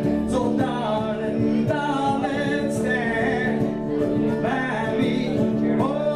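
A man singing live while strumming an acoustic guitar, the sung line rising and falling over sustained chords.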